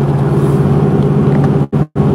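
Steady engine and road drone of a moving vehicle, heard from inside the cab. It cuts out briefly twice near the end.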